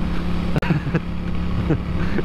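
Moto Guzzi V7's air-cooled transverse V-twin engine running steadily at cruising speed, heard from the rider's own bike.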